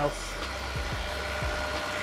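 Steady low background hum with a few faint steady tones above it, room tone with no distinct event.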